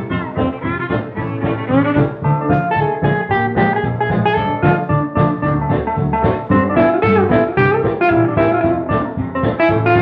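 Instrumental break of a 1940s country string band record, the band playing on at a steady beat with no singing.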